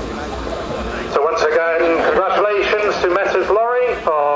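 A man's voice announcing over a public-address system, starting about a second in, above a low outdoor rumble.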